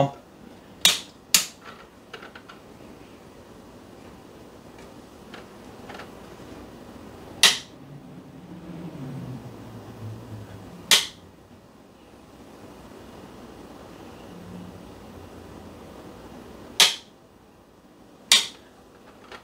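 Five sharp clicks from the switches of a Gaggia Classic espresso machine being cycled to get its pump to kick on and fill the empty boiler: two close together about a second in, then three more spaced several seconds apart. Between them only a faint low hum.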